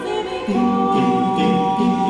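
Small mixed vocal ensemble of one woman and four men singing a cappella in harmony. After a brief break at the start, they hold sustained chords from about half a second in.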